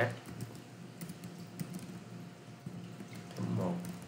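Typing on a computer keyboard: scattered keystrokes at an irregular pace, over a steady low hum.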